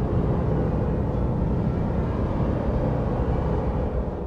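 Steady, loud low rumble of outdoor background noise with a faint hiss above it.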